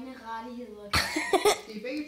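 A boy's voice, laughing and vocalizing without words, with a short cough-like burst about a second in.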